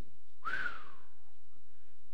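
A man's short, breathy whistle that rises briefly and then falls: an admiring whistle, the sound of a neighbour eyeing a new car.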